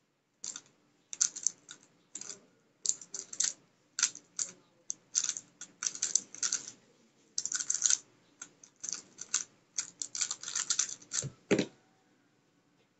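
MF3RS Stickerless V1 3x3 speed cube being turned fast in a solve: rapid runs of plastic clicking layer turns with short pauses between them. A low thump comes near the end.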